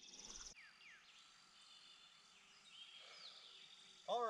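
Near-silent outdoor ambience: a few faint bird chirps, with a short high insect-like trill in the first half-second.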